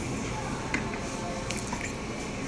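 Two light clicks, about three quarters of a second apart, from a small wooden box and the computer mouse on its lid being handled, over steady room noise.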